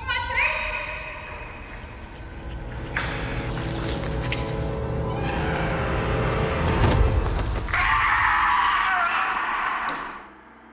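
Music with a man yelling and screaming over it. The screaming is loudest and most sustained over the last couple of seconds.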